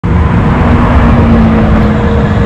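Red supercar driving past at speed, its exhaust giving a loud, steady engine note.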